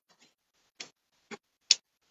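Three short, separate clicks during a pause in speech, the last the loudest.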